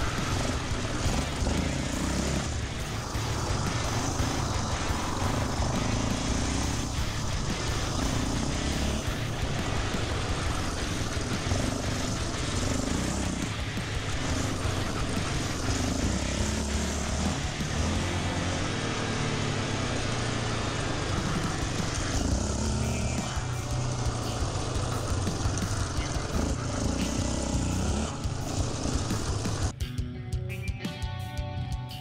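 Sport quad (ATV) engine running hard as it laps a dirt track, the revs rising and falling through the corners, with wind noise on the microphone.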